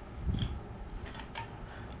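A few faint, light metallic clicks as the quick-detach rail mount of an ATN TICO thermal clip-on sight is worked loose.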